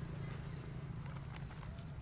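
Faint, irregular clicks and rustles of hands pressing soil and handling plastic grow bags around seedlings, over a low steady background hum.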